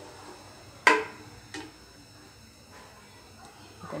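A wooden spoon knocks sharply once against a metal nonstick pan about a second in, then knocks again more softly just after.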